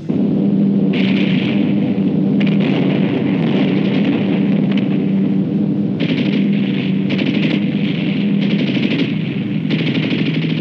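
Aircraft engines droning steadily, with long bursts of rapid machine-gun fire from the plane starting about a second in.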